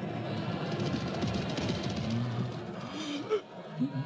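Film soundtrack music mixed with a racecourse crowd shouting during a horse-race finish. The din thins out about three seconds in.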